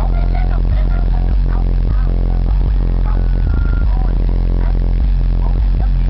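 Car stereo playing loud, bass-heavy music through trunk-mounted Alpine Type-R subwoofers, the deep bass dominating the sound.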